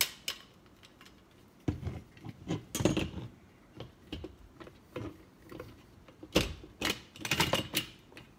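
Folding tripod stand being handled: scattered clicks, knocks and light rattles from its metal legs and plastic clamps and locks as it is turned over and adjusted, with the sharpest knock about six seconds in.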